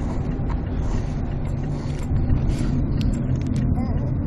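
Steady low rumble of car road and engine noise heard inside the cabin, with a few faint clicks or rattles in the second half.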